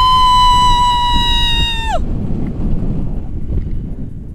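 A woman screams with excitement as the tandem paraglider lifts off: one long high note held steady for about two seconds that swoops up at the start and drops away at the end. After it, wind buffets the microphone.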